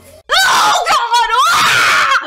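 A woman screaming loudly after a brief gap, one long scream whose pitch wavers up and down.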